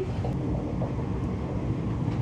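Steady low rumble of a Laos–China Railway electric passenger train running along the track, heard from inside the coach.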